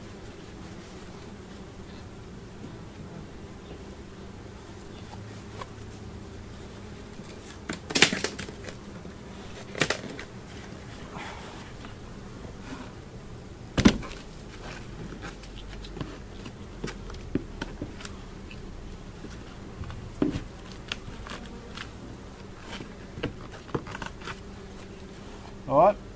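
Honey bees buzzing steadily around an open hive, with sharp knocks and clunks from hive boxes and a hive tool being handled; the loudest knocks come about 8 and 14 seconds in.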